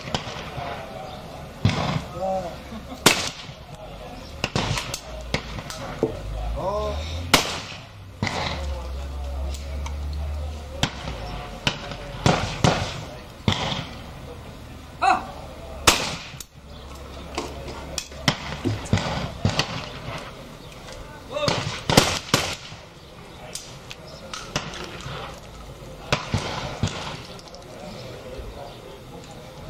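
Break-action shotguns firing at clay targets on a trap range: single sharp shots every few seconds, once two in quick succession, with fainter shots from other stations in between.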